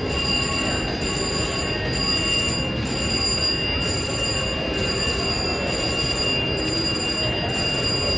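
Steady casino-floor noise around a VGT slot machine, with electronic machine sounds and a thin high tone held throughout; the machine plays one spin of its reels in the second half.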